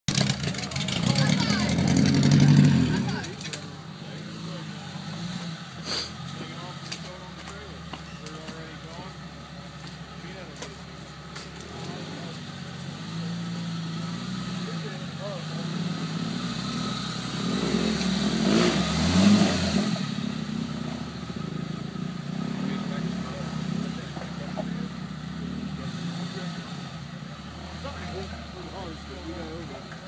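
A lifted Jeep Cherokee's engine running in a muddy creek bed, revved up hard near the start and again about two-thirds of the way through, settling back between surges as the driver works at a rain-slick rock ledge.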